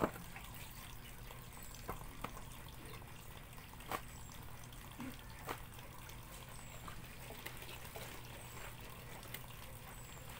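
Water sloshing and dripping as clothes are washed by hand in basins, with a few brief sharp splashes, the loudest right at the start.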